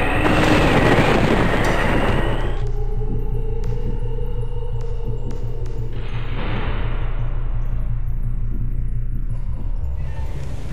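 Film sound effect of a loud rushing boom for a supernatural strike of lightning and black smoke, over a low, ominous music score. The rush cuts off suddenly about two and a half seconds in, leaving the low drone of the music, and a softer rushing swell rises again around six seconds in.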